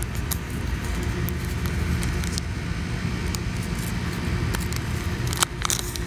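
A small clear plastic seed pouch handled between the fingers: light crinkles and clicks, with a cluster of sharper clicks near the end. A steady low rumble runs underneath.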